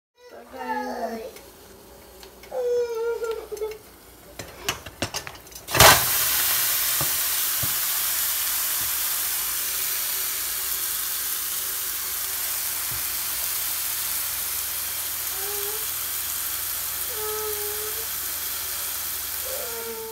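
Seasoned turkey necks going into a hot stovetop pot: a sharp clatter about six seconds in, then a steady loud sizzle as the meat sears, easing slightly. The necks are being pre-cooked on the stove before baking.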